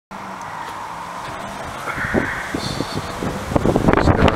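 Outdoor background noise that grows louder, with a brief higher tone about halfway, and wind starting to buffet the microphone in gusts near the end.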